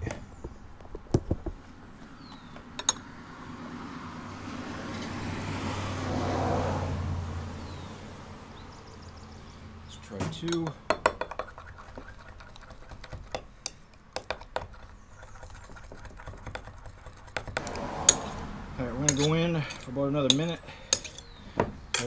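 Metal spoon clinking and scraping against a glass measuring cup as liquid plastisol is stirred with white colorant mixed in, in irregular sharp clinks. A low rush of noise swells and fades a few seconds in.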